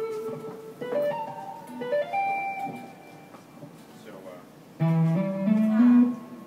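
Electric guitar through an amp playing quick rising runs of a four-notes-per-string pentatonic scale, skipping strings and adding right-hand tapped notes at the top. The notes climb in short steps in separate phrases, one about a second in and another starting low near the end, with a pause between them.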